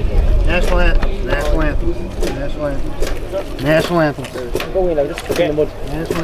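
Several people talking and calling out over one another, with a low wind rumble on the microphone during the first couple of seconds.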